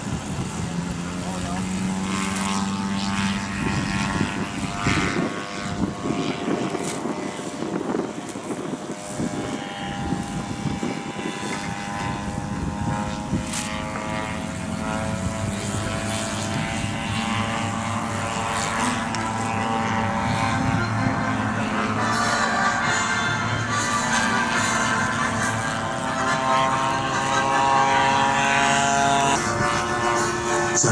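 Propeller engines of large-scale radio-controlled Douglas A-1 Skyraider model aircraft running up and taking off. The drone holds several steady pitches that drift slowly, and it grows louder toward the end as they climb away.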